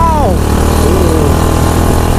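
Small engine of a home-built mini car running steadily under way, a continuous low drone; a man's short exclamation at the very start.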